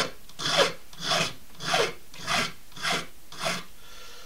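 Small hand file rasping across a cow pastern-bone fish-hook blank, about six even strokes a bit over half a second apart, filing the corners round.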